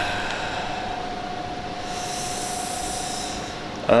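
A steady indoor appliance hum with one constant mid-pitched tone running through it. A soft hiss swells up about two seconds in and fades before the end.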